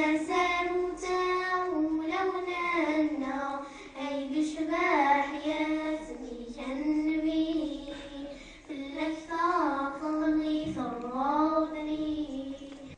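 Two young girls singing a Kabyle song together without accompaniment, one melody line in long held notes that glide between pitches, phrase after phrase with short breaths between.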